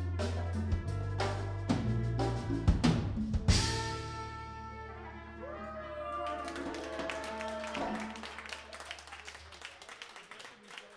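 Live Cuban band of trumpets, trombone, drum kit, congas, electric bass and keyboard ending a song: several loud accented hits played together in the first few seconds, then a held final chord that fades away over several seconds, with sliding notes over it. Audience clapping comes in as the music dies away.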